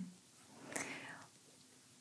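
A faint, soft breath drawn in between sentences, lasting under a second, with a small mouth click in the middle of it.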